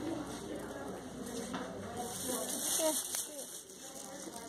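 Indistinct voices of people talking in a large hall, with no clear words.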